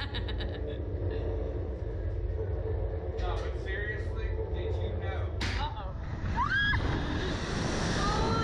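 Slingshot reverse-bungee ride: a steady low rumble and hum while the riders wait, then about five and a half seconds in the ride launches, with a rider's rising scream and a growing rush of wind over the on-board camera's microphone.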